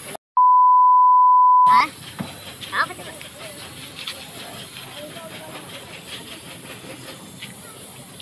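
A loud, steady beep tone at one pitch, edited in over a muted track, lasting about a second and a half near the start. After it, a gravity-feed air spray gun hisses steadily as paint is sprayed along the car's door sill.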